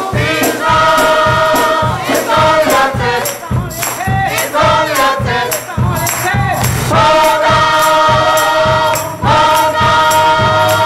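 Gospel choir singing in full voice, holding long notes, over a steady percussive beat.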